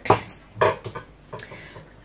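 A few short knocks and clinks from a glass measuring jug with a metal spoon in it being handled on the counter.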